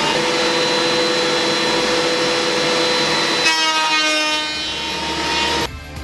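Portable thickness planer running alongside a shop dust collector, a loud steady machine noise with a high whine. About three and a half seconds in the sound shifts as an old floorboard is fed through the cutter, and just before the end it cuts abruptly to background music.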